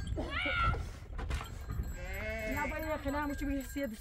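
Young goats bleating: a short call just after the start, then a long quavering bleat from about halfway through.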